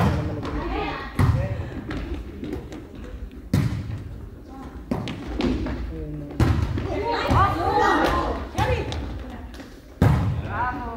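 Volleyball being struck during a rally: sharp hits on the ball every one to three seconds, echoing in a sports hall, with players' calls and shouts between them.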